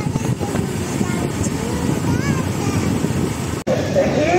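Wind buffeting the phone's microphone on a moving motorcycle, a steady low rush mixed with the ride's road noise, with a faint voice about two seconds in. It cuts off suddenly near the end.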